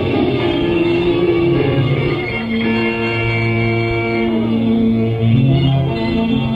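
Live punk/deathrock band playing an instrumental stretch: electric guitar and bass holding long sustained notes that change every second or two. The recording is dull, with no treble.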